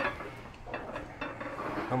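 Light metallic clinks and knocks from a plate-loaded chest press machine as reps are pressed, with a sharper click right at the start.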